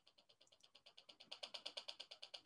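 A homemade oscillator circuit heard through a small amplifier module: a rapid, even train of clicky pulses, about ten a second, fading up from near silence as the module's volume potentiometer is turned up.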